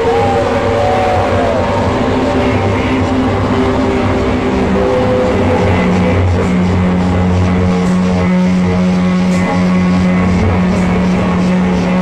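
Loud live noise-rock/drone band playing a dense, droning passage: amplified instruments hold sustained notes over a thick wash of distorted noise, with a short sliding tone in the first couple of seconds and a low note held steadily from about halfway.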